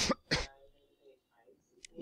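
A man clears his throat in a couple of short rasps near the start, then near quiet with a faint click near the end.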